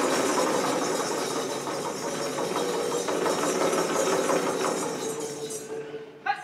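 Two Kandyan geta bera drums played in a fast, unbroken roll, a dense rattle of strokes that starts abruptly and tapers off just before the end.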